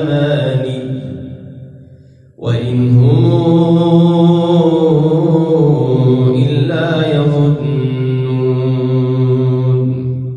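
A man's voice reciting the Quran in melodic tajweed chant. One long phrase trails away about two seconds in, and after a brief pause he starts a new long, sustained phrase.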